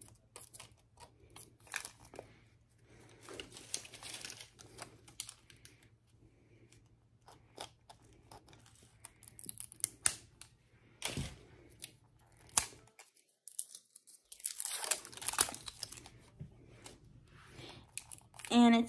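Plastic wrapping on a toy surprise ball being picked at and pulled off by hand: irregular crinkling and tearing with scattered small clicks, one sharper click about eleven seconds in.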